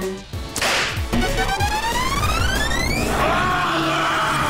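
Cartoon sound effects: a quick whoosh about half a second in, then a long rising whine that climbs steadily for about two seconds, giving way near the end to a loud rushing noise.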